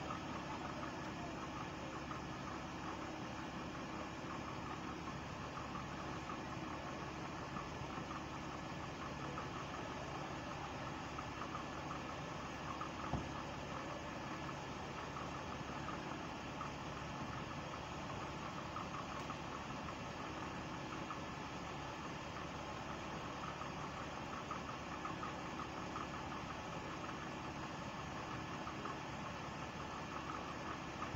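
Car engine running steadily in gear with a jacked-up front wheel spinning freely, and a steady noise from the wheel hub where it should be silent, which the owner takes for a worn wheel bearing. One short click partway through.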